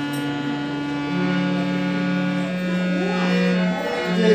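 Harmonium sounding long held reed notes in a steady chord. The chord shifts about a second in and breaks off just before the end.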